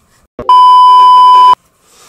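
A loud, steady electronic beep tone lasting about a second, starting about half a second in and cutting off abruptly: an edited-in bleep of the kind laid over a word to censor it.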